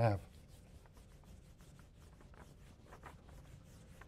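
Faint, irregular rubbing strokes of a whiteboard eraser wiping across a whiteboard.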